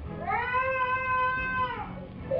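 A young child wailing one long, drawn-out "Mom!", the pitch rising at the start, held, then falling away near the end. It is heard through a television speaker.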